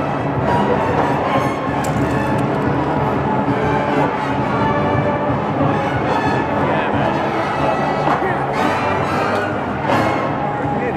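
A marching drum and bugle corps playing: brass horns over drums, steady and fairly loud throughout.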